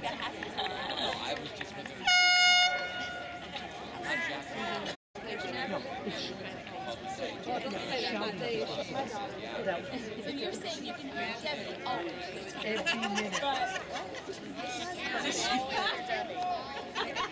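Spectators talking indistinctly beside a lacrosse field. About two seconds in, one short, loud horn blast sounds, the loudest thing here, with a brief echo after it.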